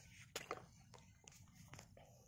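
Near silence with a few faint clicks and taps, the clearest two close together about a third of a second in: a kwitis bottle rocket's stick being handled and fitted into a plastic chair's seat slats.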